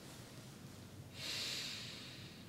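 A person's breath: a single audible, hissing breath lasting under a second, starting just past halfway, over faint room hiss.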